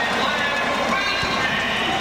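Basketball game sound on a hardwood court: steady arena crowd noise with sneakers squeaking as players run, and a couple of low thuds.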